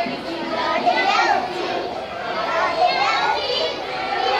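A group of young children's voices talking and calling out at once.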